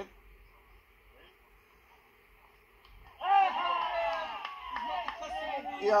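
Faint open-air hush for about three seconds, then cricket players break into loud, overlapping shouts, an appeal and celebration as a wicket falls.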